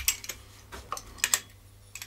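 A few sharp, separate clicks and knocks of a metal bipod clamp and air rifle being handled as the clamp is fitted onto the rifle's buddy bottle, with a close pair about a second in.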